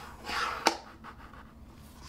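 Hands handling a cardboard packaging box: a brief soft brushing rustle, then one sharp click about two-thirds of a second in.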